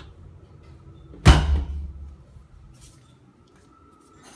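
A door shutting with a single sharp thud about a second in, followed by a short low rumble.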